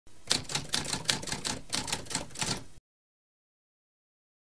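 Typewriter sound effect: a quick run of key clacks, about four a second, that cuts off abruptly a little under three seconds in.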